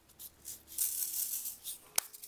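Loose diamond-painting resin drills rattling in a small plastic container: a dense rattle for about a second in the middle, then a sharp click near the end.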